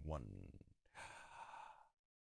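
A man's soft breathy exhale, like a sigh, into a close microphone about a second in, just after a spoken word with a rising pitch.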